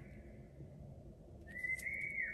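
A faint, high whistling tone that comes in about three-quarters of the way through and holds steady.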